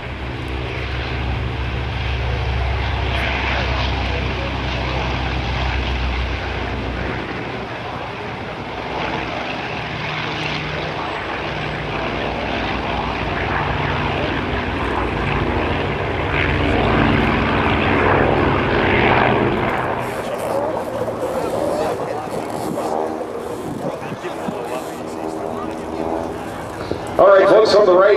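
Grumman F7F Tigercat's twin Pratt & Whitney R-2800 radial engines at takeoff power, a deep rumble on the takeoff roll. About seven seconds in, the deepest part of the rumble drops away as the plane climbs out, leaving a steady, wavering propeller drone.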